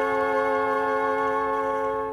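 Orchestral lounge music holding a single sustained chord steady, with no change of notes.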